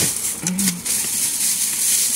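Thin plastic shopping bag rustling and crinkling as it is handled and items are pulled out of it.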